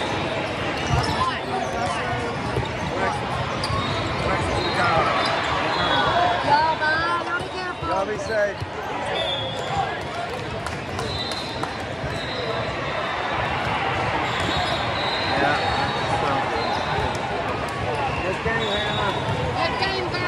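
Volleyball tournament hall: many voices chattering, with scattered sharp thuds of balls being hit and bouncing on the courts, and short high tones now and then.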